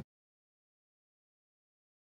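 Complete silence: the sound track is muted, with no room tone at all.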